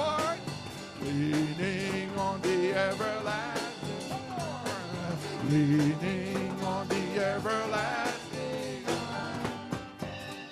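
Live church band playing a country-style hymn, with guitars and drum kit, in an instrumental stretch: a melody line bends and slides over steady chords, and the music eases down near the end.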